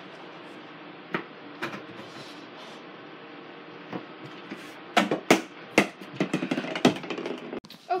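Light taps, then a quick run of knocks and thuds about five seconds in as a small ball is thrown at a mini basketball hoop on a wooden door, over a steady room hiss.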